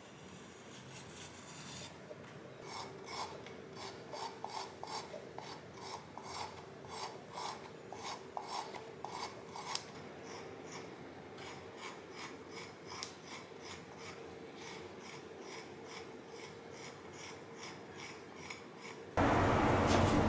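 Metal shaving tool scraping the clay inside of a Raku matcha bowl in short rasping strokes, about two a second, growing lighter about halfway through. Near the end a louder steady noise cuts in suddenly.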